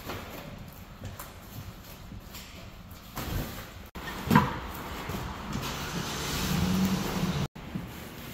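Cardboard moving boxes being handled and set down in the back of a box truck, with a sharp thump about halfway through. A steady low hum, like an engine, swells over the last couple of seconds, and the sound cuts out abruptly twice.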